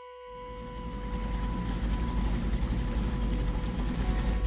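Outboard motor pushing a small open boat at speed: a steady engine rumble mixed with the rush of water and spray. It fades up over the first second, and a steady held music tone continues underneath.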